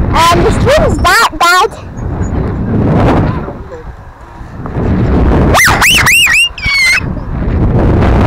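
A child shrieking and squealing in high-pitched, arching cries, a few right at the start and another run of them about five and a half seconds in, while riding a playground swing that is being pushed. Between the shrieks there is a surging rumble of wind on the microphone from the swinging motion.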